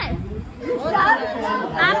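Speech only: people chatting.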